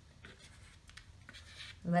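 Faint, scratchy strokes of chalk pastel being rubbed onto drawing paper, several short rubs in a row.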